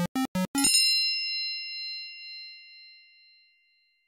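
Generative electronic music: a quick run of short synthesized beeps, about five a second, stops just under a second in. A single bright bell-like ding follows and fades out over about three seconds.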